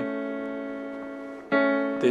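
Electronic keyboard sounding A and C-sharp together, a major third four semitones apart. The notes are held and fade, then are struck again about one and a half seconds in.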